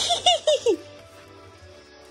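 A short burst of high-pitched giggling, four or five quick pulses falling in pitch, in the first second. Quiet background music runs under it.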